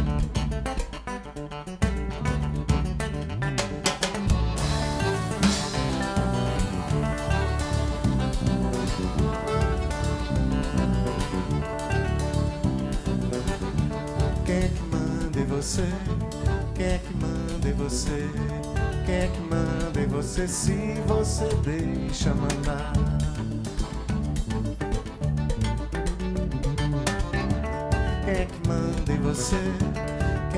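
Live Brazilian band playing a song: acoustic guitar, accordion, bass and drums. A man's singing voice joins near the end.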